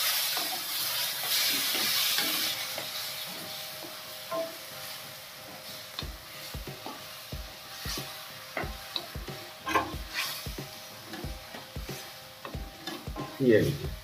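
Flat spatula stirring bitter gourd in a simmering masala gravy in a stainless steel kadai. A sizzling hiss is strongest over the first few seconds and fades. From about halfway through come short knocks of the spatula against the pan, roughly twice a second.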